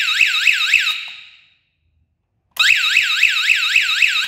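Small battery-powered electronic alarm siren, the sounder of a power-failure alarm circuit. It gives a high warbling wail that rises and falls about four times a second. It cuts off about a second in, fades away, and starts wailing again about two and a half seconds in.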